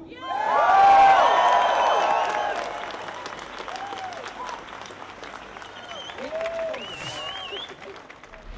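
Crowd applauding and cheering: a burst of clapping and many voices whooping, loudest in the first two seconds, then the clapping tapers off with scattered calls.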